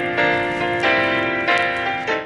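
Background music: a slow run of ringing, bell-like struck notes, about three every two seconds, each holding on until the next.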